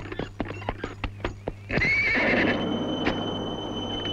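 Horse's hooves clip-clopping quickly, about six beats a second, then the horse whinnies briefly about two seconds in.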